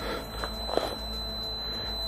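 Handheld EMF meter going off: a steady, unbroken high-pitched tone, the meter alarming at a field reading.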